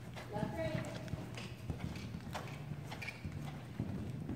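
Hoofbeats of a ridden horse on soft sand arena footing, an irregular run of dull thuds as it approaches and goes over a low jump.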